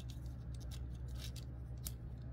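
Small plastic parts of a Transformers Studio Series 86 Bumblebee action figure clicking and rubbing as they are folded by hand: a few faint clicks, the sharpest near the end.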